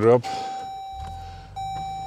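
A steady, even tone sounds. About a second and a half in, an electric motor hum with a high whine joins: the power sunroof shade of a 2023 Jeep Grand Wagoneer L starting to move, heard from inside the cabin.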